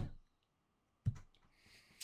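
Two short, sharp clicks about a second apart, each dying away quickly, with near silence between.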